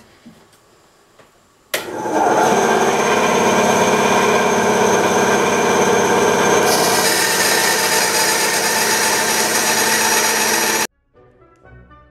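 Ryobi 9-inch benchtop bandsaw switched on about two seconds in, its motor and blade running at a steady pitch; a higher hiss joins a little past halfway. The saw sound cuts off suddenly near the end, giving way to faint orchestral music.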